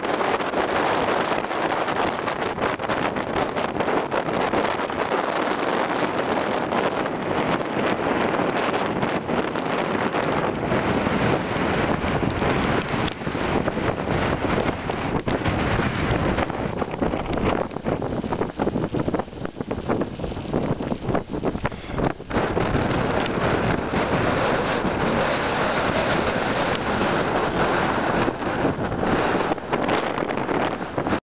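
Wind buffeting the microphone, a steady rushing noise that eases for a few seconds about two-thirds of the way through.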